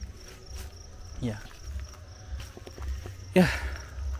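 A steady, high, fast-pulsing insect trill over a low rumble on the microphone, with a man saying "yeah" twice, the second time louder.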